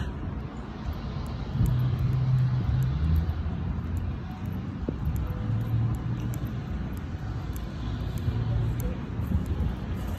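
Street traffic: a low, steady rumble of passing road vehicles, with an engine hum that swells about a second and a half in and rises and falls through the rest.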